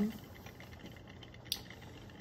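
Quiet lab room tone with a single short, sharp click about one and a half seconds in.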